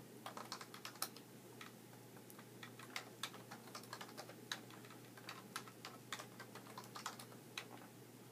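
Faint, irregular keystrokes and clicks on a computer keyboard, several a second, as spreadsheet formulas are typed in, over a steady faint low hum.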